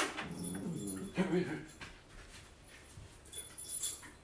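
Sharp clicks from a turntable's controls as it is started, the first at the very start and another about a second in, with a short voice-like sound wavering in pitch over the first two seconds and light clicking near the end.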